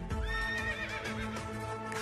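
A horse's whinny, one long wavering high call, used as a sound effect over the backing music of a Hindi patriotic song.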